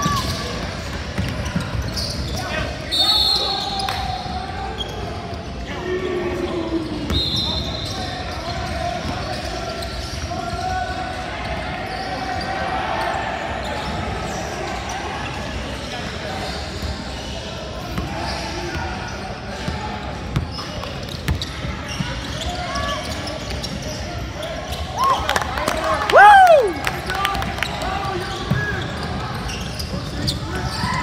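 Basketball dribbling on a hardwood gym floor, with voices of players and spectators echoing around a large hall. A brief, loud, high sliding sound stands out about four seconds before the end.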